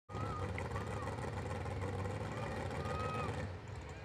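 A mud bog truck's engine idling steadily, a low even rumble, with faint voices in the background.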